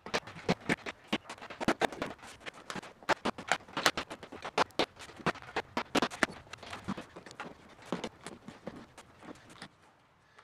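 Upholstery staples being pried out of a golf cart seat's edge with a flathead screwdriver: an irregular run of sharp metal clicks and ticks, several a second, that stops just before the end.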